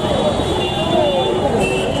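Busy street ambience: voices talking over the low rumble of road traffic.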